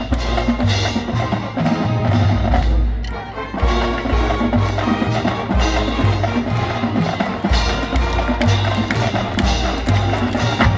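Marching band playing on the field: brass over drums and percussion, with held low notes that change every second or two and a brief dip in volume about three seconds in.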